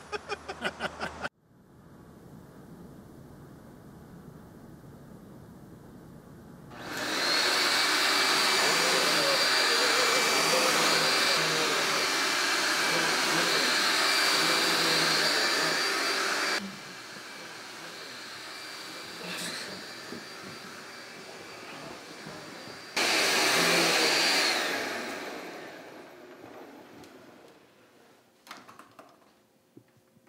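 Upright vacuum cleaner running with a loud, steady high whine. It starts about a quarter of the way in and drops away about halfway through, then comes back on suddenly near the end and winds down.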